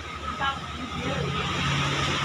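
A steady low engine hum that grows gradually louder, with a faint voice briefly in the background.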